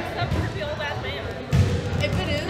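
Voices talking over a few dull low thumps, the strongest about one and a half seconds in, in a gym with wooden bleachers.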